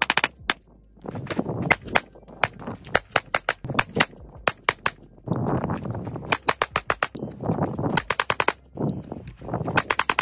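Sig Sauer P365X Macro Comp 9mm pistol fired in fast strings of shots, several a second, with short pauses between strings.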